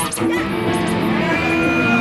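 Electric guitar playing in a live band, strummed near the start and then letting chords ring, with no singing.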